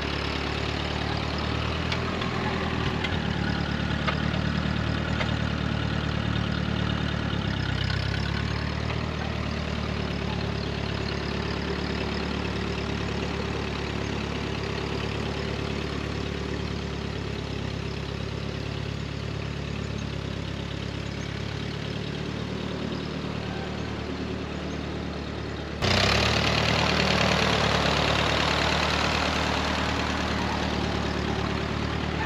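Ford 8N's four-cylinder flathead engine running steadily as the tractor drives off at low speed. Near the end the sound jumps suddenly louder and closer, with the crunch of tyres on gravel over it.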